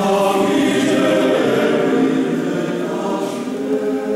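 Male-voice choir singing a cappella in several parts, holding full sustained chords; the sound is fullest in the first seconds and moves to a new chord near the end.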